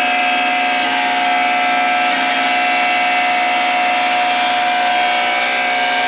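Electric grinding mill (pulverizer) running steadily, grinding dried herb roots and stems to powder: a loud, even machine whine over a steady hum.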